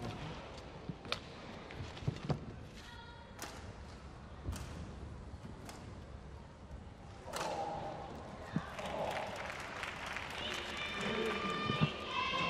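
Sharp knocks of badminton rackets striking a shuttlecock, about one a second, from a rally on a nearby court in a large hall. Indistinct voices grow through the last third.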